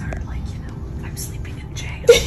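A person whispering softly, with breathy hisses, over a steady low hum.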